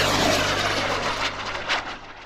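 Jet- or rocket-like rushing sound effect, loud at first and fading away steadily over about two seconds.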